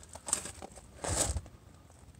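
Faint rustling and scuffing of handheld movement, with a slightly louder scuff about a second in.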